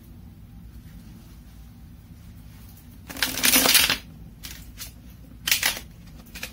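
A deck of tarot cards being shuffled: a loud papery riffle of just under a second about three seconds in, then a shorter burst of card noise near the end.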